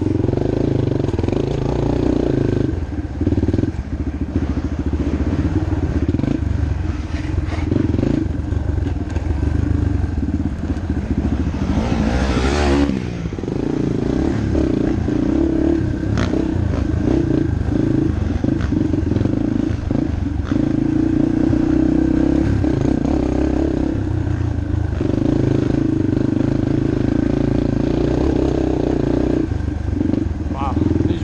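Yamaha TTR230 dirt bike's air-cooled four-stroke single running hard over a rough trail, revs rising and falling, with rattling from the bike.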